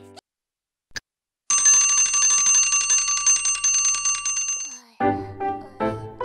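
A bell ringing in a fast, steady trill for about three seconds, after a moment of silence. About five seconds in, gentle children's music with plucked notes begins.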